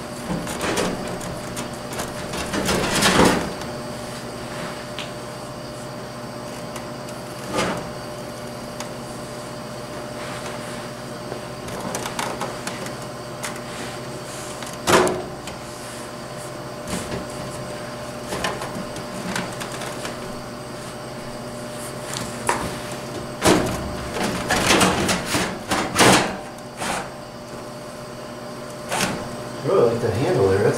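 Frigidaire FHWC253WB2 air conditioner's metal chassis being pushed by hand into its sheet-metal wall sleeve, with scraping slides and scattered clunks. The clunks come a few times early on and cluster near the end as it seats. A faint steady hum runs underneath.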